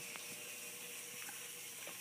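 Faint steady hiss with a faint steady hum underneath and a few light clicks.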